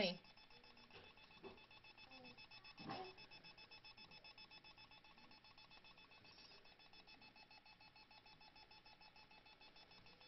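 Near silence, with a faint rapid electronic beeping repeating steadily in the background and a brief faint sound about three seconds in.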